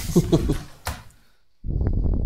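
Men's voices in a small studio, tailing off within the first second. Then, after a short pause, a brief low, muffled burst of sound near the end.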